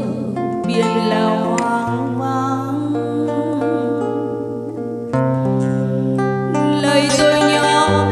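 A woman singing a slow ballad into a microphone over live guitar accompaniment, with long held bass notes that change chord every few seconds.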